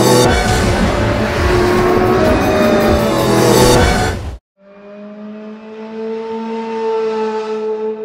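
Show-intro soundtrack: a car engine revving hard over music, cutting off sharply about four seconds in, followed by a quieter held drone that rises slightly in pitch.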